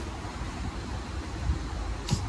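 Steady outdoor background noise with a low rumble, and a soft thump about one and a half seconds in.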